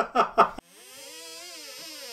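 A man laughing in three quick bursts that cut off abruptly. Then a held tone with overtones rises slowly in pitch and falls again.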